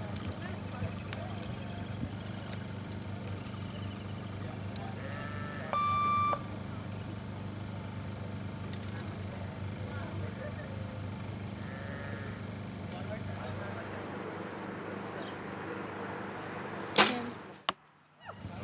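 A compound bow shot once near the end: a single sharp crack as the string is released. About six seconds in there is a half-second electronic beep, over a steady low hum.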